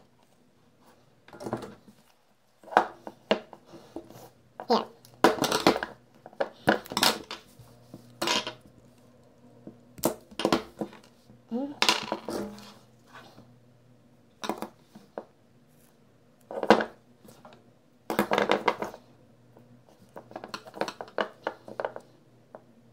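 Handling noise from a pack of 18650 lithium-ion cells and soldering tools on a tabletop: irregular sharp clicks, knocks and clatter, in clusters, over a faint steady hum.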